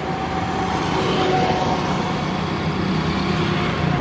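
A motor running steadily with a low hum, growing slightly louder over the few seconds.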